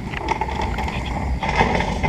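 Casters of a wheeled sousaphone flight case rolling over a concrete driveway: a steady rumble with fine clicking.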